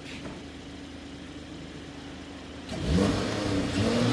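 Mercedes-AMG E53's turbocharged straight-six engine: a quiet low steady hum, then a sharp rev about three seconds in, with the engine note climbing and holding at a higher speed.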